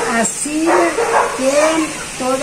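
A woman's voice speaking, with a couple of long, drawn-out syllables.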